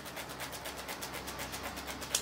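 Folding paper hand fan being waved quickly close to the microphone: a faint, fast, even rhythm of little air whooshes over a low steady hum.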